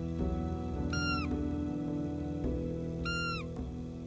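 Two short squeaky blasts on a hand-held roe deer call, each about half a second long with the pitch dropping at the end, about two seconds apart. They are blown to make a bedded roe buck stand up.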